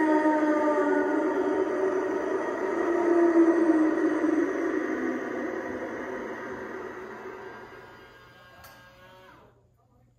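Animatronic ghost bride prop's built-in speaker playing eerie, music-like sound while it animates. The sound fades gradually and dies away just before the end.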